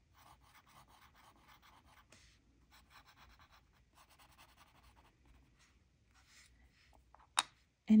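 Graphite pencil shading on a small paper tile: faint, scratchy strokes in short quick runs. Near the end comes a single sharp click as the pencil is set down on the bamboo board.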